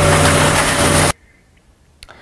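Warehouse machinery running: a steady mechanical hum under loud hiss, cut off abruptly about a second in, leaving only faint background noise.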